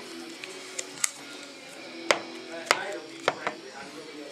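Several sharp clicks and knocks of pistols being handled and set down on a glass display case, the loudest about two seconds in and again shortly after.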